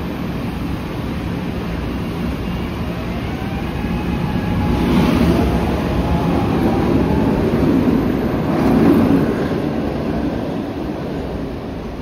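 SEPTA Market-Frankford Line subway train pulling out of the station: a steady rumble swells as it gets moving, with a motor whine gliding in pitch through the middle, then eases off as the last car clears.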